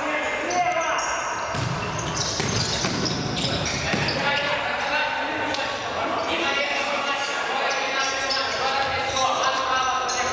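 Futsal ball being kicked and bouncing on a gym floor during play, with players' voices calling out, all echoing in a large sports hall.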